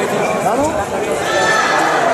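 Chatter of many voices in a large sports hall, with single voices gliding up and down in pitch about half a second in and again around the middle.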